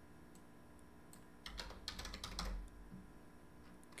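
Computer keyboard keys being typed, faint: scattered keystrokes with a quick run of them in the middle.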